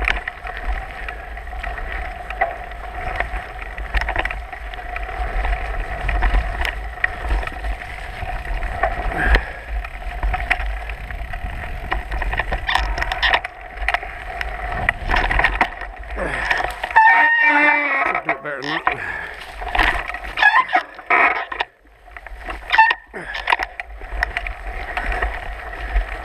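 Mountain bike ridden over a dirt singletrack: continuous rattle and knocking of the bike over the rough ground, with tyre noise and a steady low rumble of wind on the microphone. Short wavering squeals come through about two-thirds of the way in.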